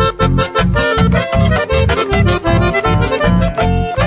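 Instrumental passage of a Paraguayan polka: accordion playing the melody over a steady, evenly pulsing bass beat.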